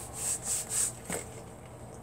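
A few short sniffs, about three in the first second, as a person smells a black purse held to her nose to see whether it is leather, then a faint click about a second in.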